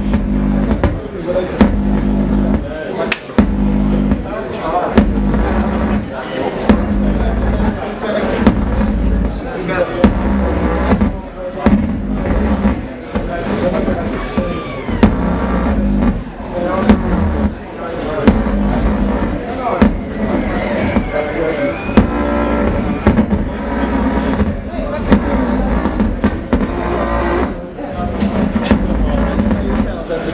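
Giant homemade modular synthesizers played by touch, giving a loud, dense electronic noise piece: choppy low pulsing drones under stacked buzzing tones, with sharp crackles and a few gliding, warbling pitches high up.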